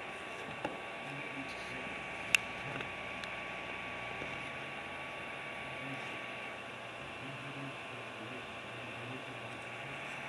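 Steady background hiss and hum with a faint steady whine, broken by two small clicks, the sharper one about two seconds in.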